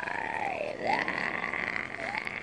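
Baby fussing, a drawn-out whiny vocalisation that dips and rises in pitch and then holds steady.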